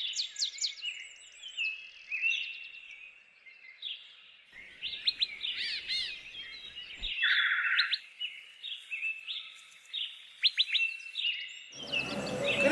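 Several birds chirping and whistling together in short calls and trills, with a short buzzy call a little past the middle.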